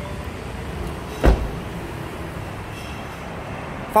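Chevrolet Cruze rear passenger door being shut: a single solid thump about a second in, over a steady background hum.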